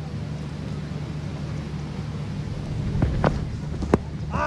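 Steady low hum of cricket-ground ambience on a broadcast sound track, with a single sharp knock just before the end, fitting bat striking ball.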